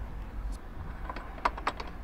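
A few light clicks of small hardware being handled, over a low steady rumble.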